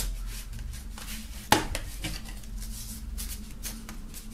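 A paper CD booklet being slid and pressed into the tight pocket of a cardboard digipak: paper and card rubbing and rustling, with one sharp tap about a second and a half in.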